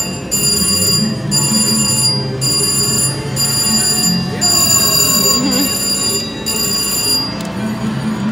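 VGT slot machine's reel-spin chime: a bright electronic ringing that repeats about once a second in short blocks as the reels spin, stopping shortly before the end. Casino background music and chatter sit underneath.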